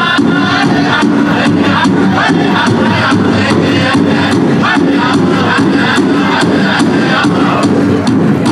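Powwow drum group: several men singing together over a big drum struck in a steady, even beat.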